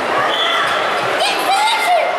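Many people talking at once in a large sports hall, the voices echoing off the walls.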